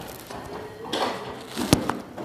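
Handling noise of a phone being picked up and propped up: rubbing and rustling, then a single sharp knock near the end as it is set against something.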